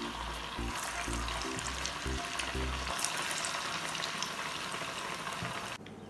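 Potato vada frying in hot oil in a cast-iron pan: a steady sizzle that cuts off shortly before the end.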